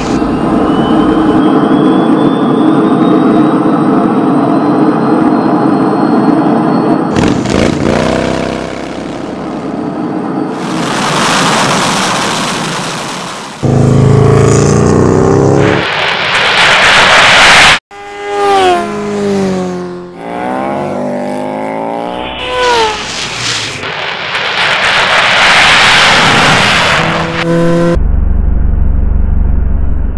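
Sound-effect jet fighter engines: a steady roar with a thin whine rising over the first seconds, then a very loud jet roar of takeoff that cuts off suddenly. An engine revs up and down several times, followed by more loud rushing roar.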